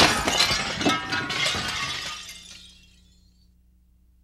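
Window glass shattering as a body crashes through the pane: one sudden loud crash, then about two seconds of shards clinking and clattering down, fading out by about three seconds in.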